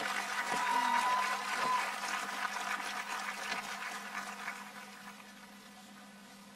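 Scattered applause from a spread-out outdoor crowd, loudest in the first couple of seconds and dying away by about five seconds in, over a steady low hum.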